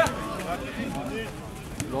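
A football kicked hard with a sharp thump at the very start, then a second, fainter kick near the end, while several men's voices call out across the pitch.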